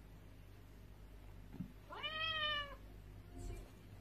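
One short recorded cat meow from an Amazon Echo Dot smart speaker about two seconds in, rising a little then falling away.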